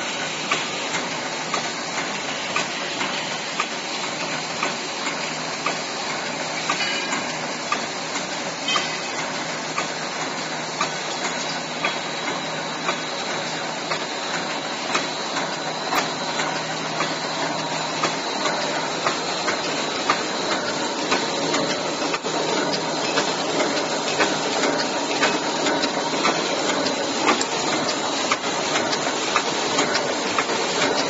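Welded wire mesh roll machine running: a steady mechanical clatter with regularly repeating knocks and clicks from its wire feed and welding strokes as the mesh is made and wound onto a roll.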